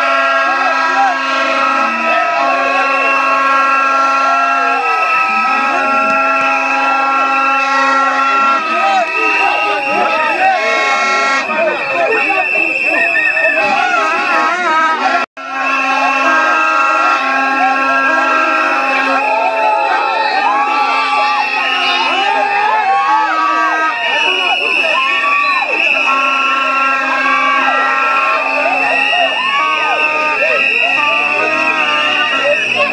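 Plastic vuvuzela horns blowing long held notes over a crowd chanting and singing. The sound cuts out for an instant about halfway through.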